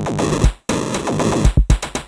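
Electronic music: layered synthesizer tones over drum-machine kicks, chopped by abrupt cut-outs, with a brief drop to silence about a quarter of the way in.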